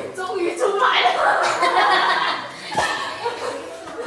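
People laughing and chuckling, loudest in the first half.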